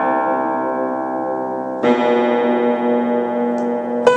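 Vintage 1937 upright piano: a chord rings on and fades. About two seconds in, a second chord is struck and held, ringing with the sustain.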